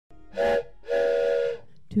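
A train-whistle sound blowing twice: a short blast, then a longer one of about two-thirds of a second.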